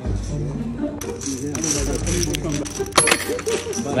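Poker chips clattering and clinking as a large pot is raked in across the felt, with the sharpest clatter about three seconds in, over background music.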